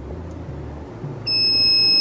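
A single high-pitched electronic beep, about a second long, from the buzzer of a SUMAKE EAA-CTDS torque display as a front-panel key is held down; it starts just over a second in.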